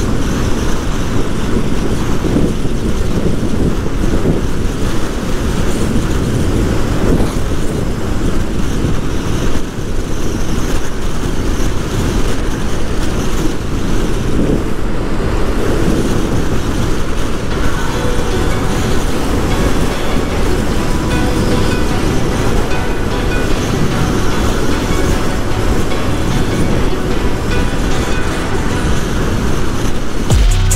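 Steady wind rush over the microphone mixed with motorcycle engine and road noise while cruising at highway speed, around 100 km/h.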